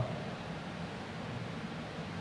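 Steady hiss of room tone and recording noise, with no distinct event.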